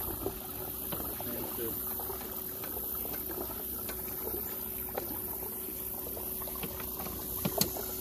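Water lapping and trickling against the hull of a small skiff moving slowly, many small clicks and bubbling sounds over a steady faint hum and a high hiss.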